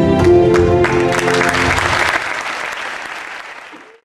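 Music with held, sustained notes comes to an end about two seconds in as audience applause rises over it; the applause then fades out steadily until it is gone.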